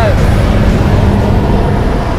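Steady, loud drone of a small jump plane's engine and propeller heard inside the cabin during the climb, with a low hum running under it.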